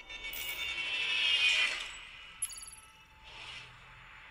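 Logo-reveal sound effects: a swelling, shimmery whoosh that peaks about a second and a half in, then a short bright chime at about two and a half seconds, and a softer swell after it.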